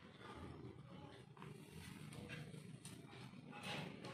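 Faint light taps of plastic chess pieces being set down on a chessboard one after another, over a low steady background hum; the last tap, near the end, is the loudest.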